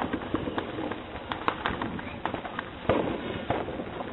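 Consumer fireworks going off: a run of sharp pops and crackles, with a louder bang about three seconds in.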